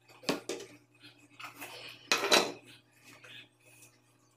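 Stainless steel bowls clinking and knocking on the table as they are handled and set down, with a few clatters near the start and the loudest about two seconds in.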